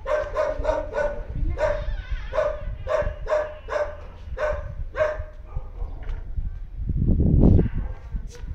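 A small dog yapping in short, high, evenly pitched yips, about three a second, which stop about five seconds in. Near the end comes a loud low rumble.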